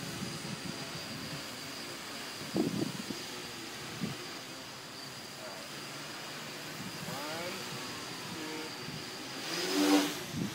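Dodecacopter's twelve electric motors and propellers running steadily in flight, with a thin high whine and pitch shifting up and down as the throttle changes. It grows louder near the end as the craft climbs close overhead.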